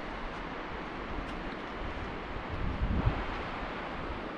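Wind buffeting the microphone in irregular gusts, strongest about two and a half to three seconds in, over a steady rushing hiss of open-air wind.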